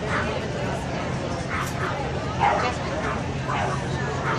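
A dog barking several times in short, sharp yips, the loudest about halfway through, over the chatter of a crowd.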